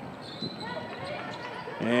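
Court sound of a basketball game: a basketball bouncing on the hardwood floor, a few light knocks over a low, steady background. A commentator's voice comes in near the end.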